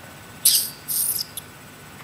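Two short, hissy, chirp-like mouth sounds made through pursed lips, about half a second and a second in, with a faint tick after.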